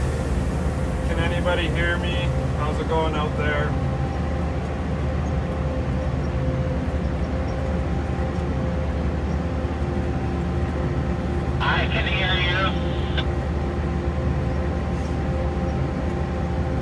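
Steady drone of a self-propelled crop sprayer's engine heard from inside its cab. A voice speaks briefly twice, a second or so in and again about twelve seconds in.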